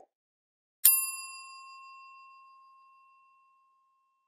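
A single bright bell 'ding' sound effect, the notification-bell chime of an animated subscribe prompt. It strikes about a second in and rings down over roughly two and a half seconds.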